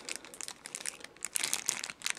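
Clear plastic bag holding a turn signal switch and its wiring crinkling as it is handled in the hand, a quick irregular run of crackles.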